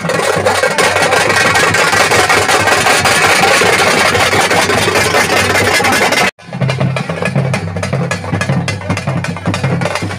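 Loud festival procession music with drums over a dense wash of noise. It breaks off suddenly about six seconds in, and after that a lower, steady pulsing drum beat carries on.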